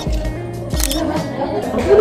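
Lofi background music with a steady beat, with a camera shutter click sound effect.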